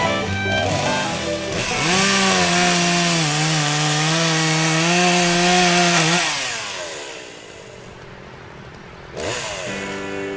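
A chainsaw engine revs up about two seconds in, runs at a steady, slightly wavering pitch for about four seconds, then winds down. Music plays at the start and comes back in suddenly near the end.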